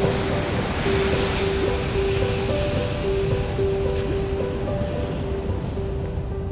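Slow ambient music of long held notes over a steady wash of ocean water sound.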